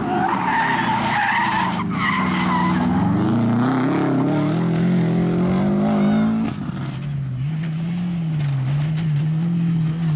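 Subaru Impreza rally car's flat-four engine revving hard, its pitch climbing steadily as it powers out of a corner, with a brief tyre squeal early on. After a sudden cut about two-thirds through, a rally car's engine rises and falls through gear changes, with tyres skidding on loose ground.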